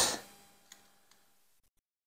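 A few faint light clicks of hard plastic model parts being handled, over a faint steady hum; the sound cuts out to dead silence shortly before the end.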